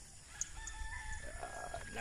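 A rooster crowing, faint and distant: one long call starting about half a second in, rising and then holding for over a second.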